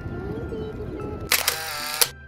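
Light background music with sustained notes over outdoor ambience. About 1.3 seconds in, a loud, sudden edited-in camera shutter sound effect breaks in and lasts well under a second.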